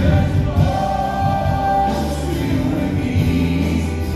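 Live contemporary worship music: male and female voices singing together over a full band with acoustic guitar, bass, keyboard and drums.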